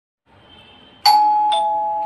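Two-tone ding-dong doorbell chime: a higher note struck about a second in, then a lower note half a second later, both ringing on.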